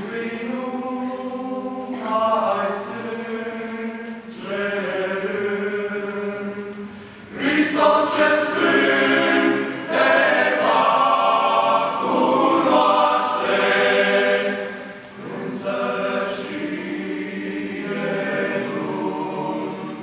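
Young men's choir singing a hymn unaccompanied, in held chords and phrases with short breaks between them; the singing grows louder from about a third of the way in and eases back about three quarters through.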